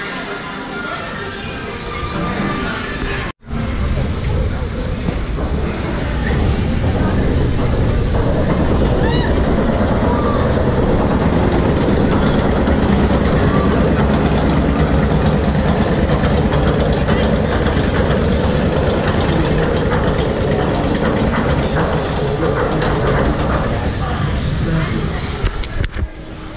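Crowd chatter for about three seconds, then after a sudden cut a loud, steady rushing noise from a moving Jurassic Park – The Ride boat, with riders' voices under it.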